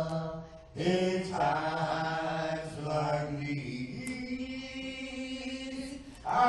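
A single voice singing slow, long-held notes, with a short breath break about a second in and a step up to a higher held note midway.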